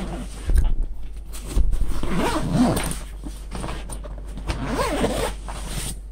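The long zipper of a Tactical Tailor duffel bag being pulled closed around the bag in a few drawn-out rasping runs. Two low thumps of the stuffed bag being handled come in the first two seconds.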